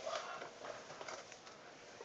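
Faint rustling and a few light taps from handling a fabric cosmetics roll-up bag with clear plastic pouches, hanging just unrolled.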